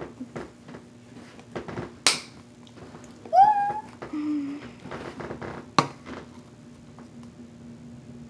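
Sharp clicks of small plastic parts being handled, an ink squeeze-bottle and a marker tube, one about two seconds in and a second near six seconds. Between them comes a brief high wordless vocal sound that rises and then holds.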